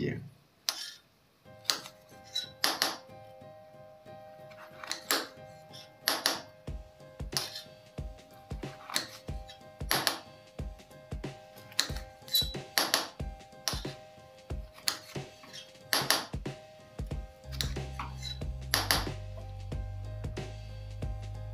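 A kitchen knife cutting bitter gourds in half on a granite countertop, the blade knocking sharply on the stone about once a second. Background music with sustained tones plays throughout, and a low bass comes in near the end.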